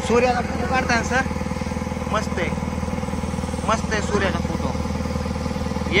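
A boat engine running steadily, a low even drone, with voices talking over it now and then.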